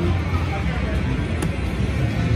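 Casino floor din, a steady low hum and murmur of machines and people, around a Wonder 4 Boost Gold slot machine as a new spin is started. A single sharp click comes about one and a half seconds in.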